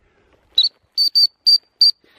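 Five short, high-pitched whistle pips from a hunter's dog whistle recalling a German pointer. The first comes about half a second in, then a quick pair, then two more, each a brief even note.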